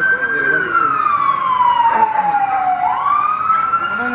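A siren wailing: its pitch falls slowly for nearly three seconds, then sweeps quickly back up and holds high.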